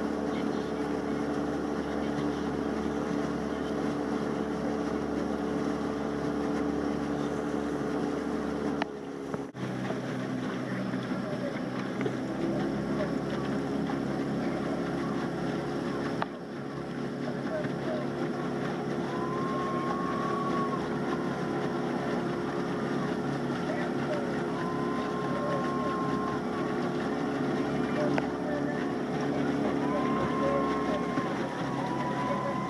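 Engine of a motor launch running steadily under way, with wind and water noise over it. The engine note breaks off briefly about a third of the way in and comes back at a slightly different pitch.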